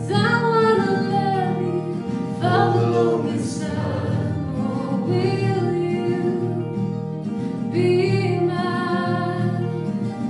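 Two acoustic guitars strummed while voices sing the melody, a woman's lead joined by a man's voice; no words come through clearly.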